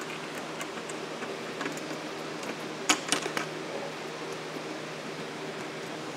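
Light clicks of small metal parts being handled as a connector is slid into the slot of a 2020 extruded aluminum rail, with a couple of sharper clicks about three seconds in, over a steady low hum.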